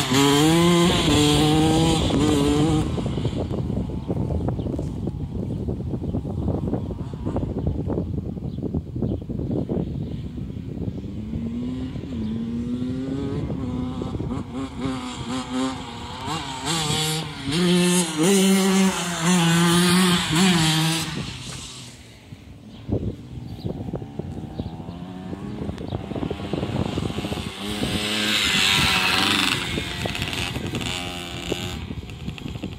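Suzuki RM85 dirt bike's 85cc single-cylinder two-stroke engine revving up and dropping back again and again as it is ridden, louder as it comes close at the start, in the middle and near the end, with a short lull about two-thirds of the way through.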